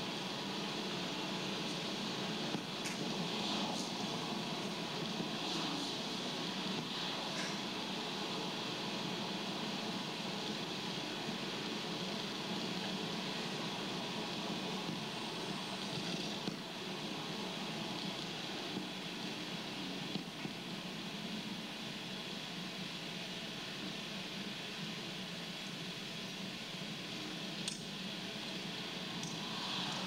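Steady car-interior road noise from a videotape of a drive, played over speakers, with a few faint ticks.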